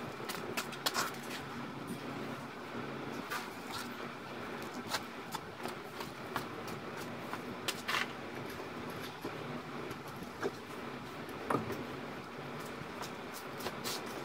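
Scattered metal clicks and knocks as the loosened upper oil pan of a BMW M42 four-cylinder is shifted and tilted free from under the raised engine, over a steady low hum.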